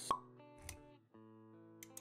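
Animated-intro music with sustained notes, opening with a sharp pop sound effect and a soft low thud about a third of the way in. The music drops out briefly about a second in, then resumes.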